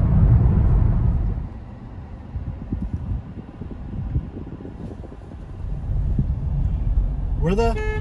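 Low road and engine rumble inside a moving car's cabin. It is louder for the first second and a half, drops away, then builds again near the end.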